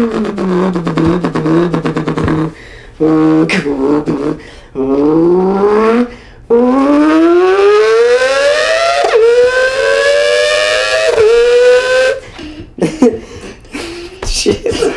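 A man's mouth imitation of a Mazda 787B four-rotor race car: a buzzing vocal engine note that climbs in pitch through the gears, dropping back at each upshift several times, then a few short sputtering pops near the end.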